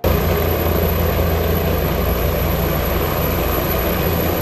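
Helicopter flying low overhead, its rotor and turbine running in a steady, loud rumble with a thin high-pitched whine above it.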